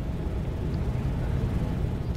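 Steady low rumble of background room noise, with no speech and no clicks or knocks.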